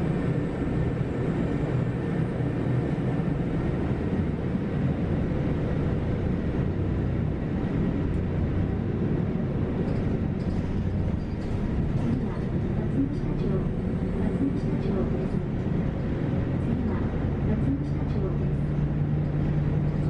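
A city bus running along the road, heard from inside the cabin: steady engine and road noise, with a low engine hum growing stronger near the end.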